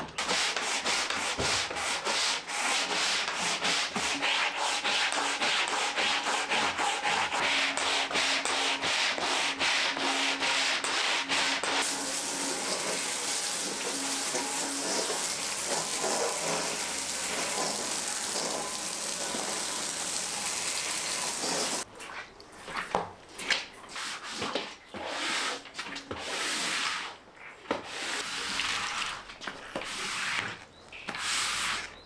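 A stiff-bristled floor brush scrubbing soapy, wet tiles: quick back-and-forth scrubbing strokes, turning into a steady continuous scrub about twelve seconds in, then slower separate strokes in the last part.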